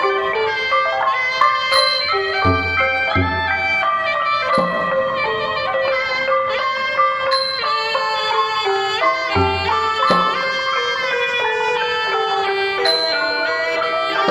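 Cambodian pinpeat ensemble playing live: a sralai reed pipe carries the melody over the roneat wooden xylophone and kong vong gong circles. Low drum strokes come in twice, a few seconds in and again about two-thirds through.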